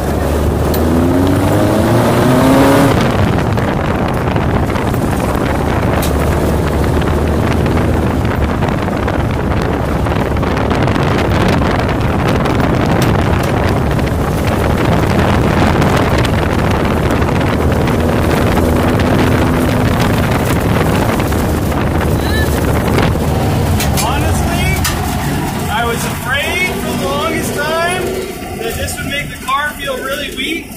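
Lifted VW Baja Bug driven off-road over a rocky gravel trail: the engine is running under way, with a rise in revs about a second in, and the tyres are rolling over loose stones. The sound gets quieter over the last few seconds.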